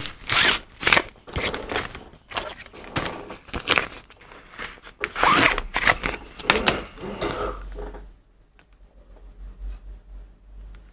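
Irregular rustling and crinkling from handheld antennas being handled, for about eight seconds, then it goes much quieter.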